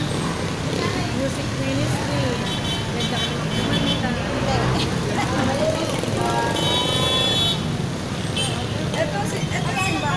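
Heavy city street traffic: a steady din of car, motorcycle and jeepney engines, with vehicle horns sounding twice, about two and a half seconds in and again about seven seconds in, and people's voices mixed in.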